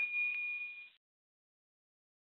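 A short bell-like ding with a steady ring that fades out within the first second, followed by silence.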